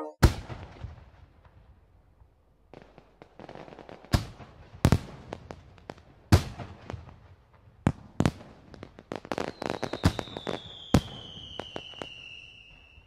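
Firecrackers going off: sharp, echoing bangs at uneven intervals, several close together toward the end. Near the end a high whistle slides slowly downward.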